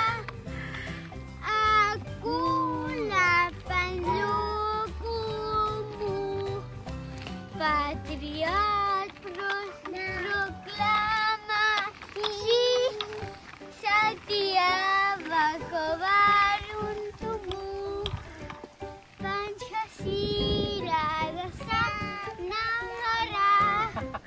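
A young child singing a song.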